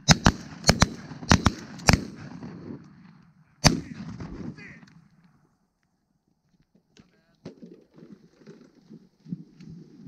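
A rapid volley from several shotguns, about eight shots in the first two seconds and one more near four seconds, with reverberating noise in between. Quieter, broken sound follows in the last few seconds.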